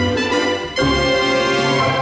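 Brass-led cartoon end-credits theme music playing in short punchy phrases, then settling on a long held final chord about a second in.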